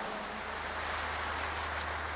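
Crowd applauding: an even, steady wash of clapping, with a low hum underneath.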